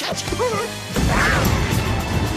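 Animated-film explosion sound effect: a sudden blast about a second in, then a deep rumble, mixed over orchestral film score.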